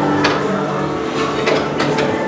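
Mechanical clatter from the mine-ride train and show machinery, with several sharp knocks over a steady low drone.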